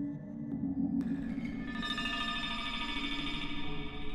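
Generative modular synthesizer patch: sine-wave oscillators and Plaits voices sent through a Mutable Instruments Rings resonator and Beads granular processor. Steady low tones hold, then a sharp click about a second in brings in a cluster of high ringing tones that swells and sustains.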